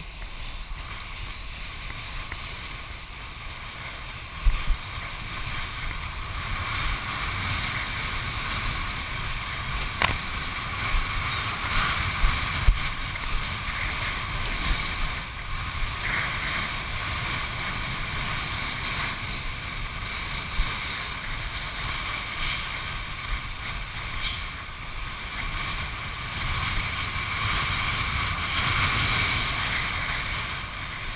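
Wind and rushing water heard through a head-mounted GoPro as a kitesurfer's board skims over choppy sea, a continuous noise with low rumbling buffets. A few sharp thumps stand out, the strongest about four and a half seconds in and again about twelve seconds in.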